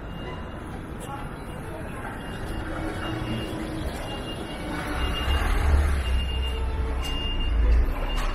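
Street noise with a van's engine running close by, its low rumble growing louder about halfway through. A short high beep repeats about once a second, and people talk nearby.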